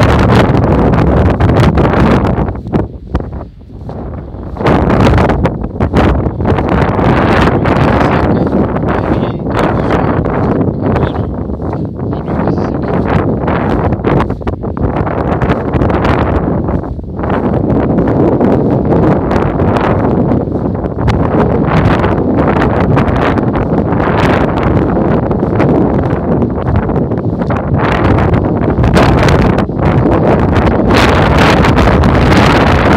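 Strong wind buffeting the microphone, loud and gusty, with a brief lull a few seconds in.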